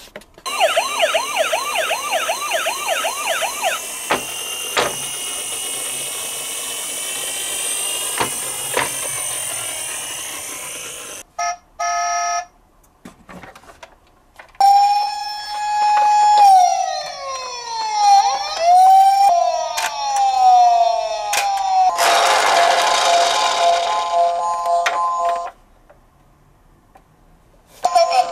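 Electronic siren sounds from battery-powered toy police cars through small speakers. First comes a fast, repeating rising yelp. After a couple of short gaps come slower wails that fall in pitch, and near the end a burst of noise with steady tones.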